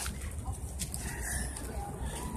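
Steady low rumble of wind and handling noise on a hand-held phone microphone while walking, with only faint sounds above it.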